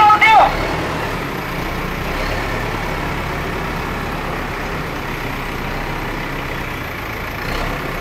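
Diesel engine of a backhoe loader running steadily as it works the front bucket, with a brief shout right at the start.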